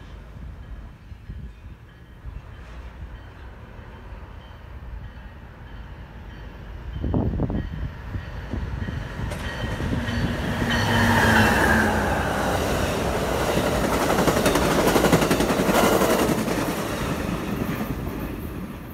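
Amtrak Pacific Surfliner passenger train, led by a Charger diesel locomotive, passing through a station without stopping. Its rumble and rushing wheel noise build from about halfway in, are loudest as the train goes by, and ease off near the end.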